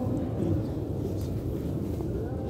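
Low, even rumble of a large, crowded mosque hall in the pause between phrases of the adhan, just after the muezzin's long held note over the loudspeakers cuts off.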